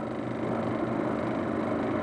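A steady, even machine-like drone with a faint low hum underneath.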